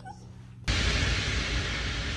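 Steady hiss of background noise that starts suddenly under a second in, after a brief quiet moment.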